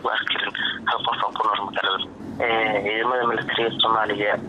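Speech only: a voice reading a news report in Somali.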